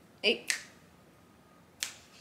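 Two finger snaps about a second and a half apart, the first right after a short vocal sound.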